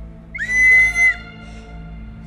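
A small toy whistle charm blown once: a single shrill, steady note of just under a second that slides up as it starts and drops as the breath ends, over soft background music.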